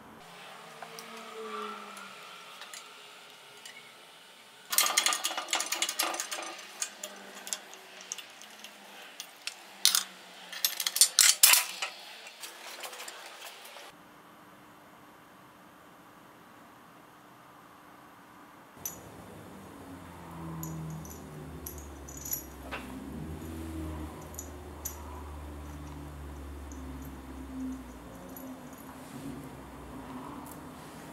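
Small metal parts and tools clinking and rattling in quick clusters of sharp clicks for about ten seconds, then stopping. A quieter low hum with occasional light ticks follows in the second half.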